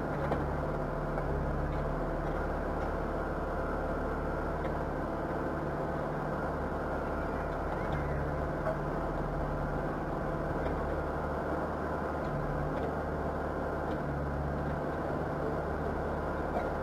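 Backhoe loader's diesel engine running steadily as it works, its note changing a little every few seconds.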